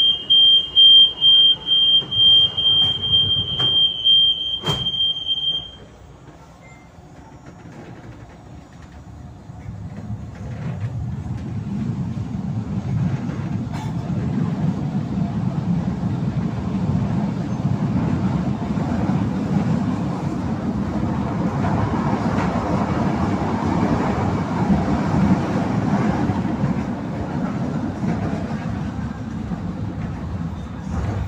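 Light-rail train car's door warning beeping high and fast for about six seconds, with a single knock near the end of it. After a short lull, the train's running rumble and wheel noise build from about ten seconds in as it pulls away and gets up to speed.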